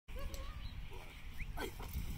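A Dutch Shepherd giving a string of short, high whines and yelps, the strongest about three-quarters of the way through, as it is worked up for bitework. A low rumble runs underneath.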